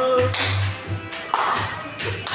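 People singing a birthday song together with hand claps, a sharp clap standing out about a second and a half in.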